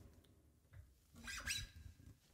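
Quiet pause in a guitar cover: the opening guitar chords die away, then a short, faint squeak of fingers sliding along the guitar strings about a second and a half in.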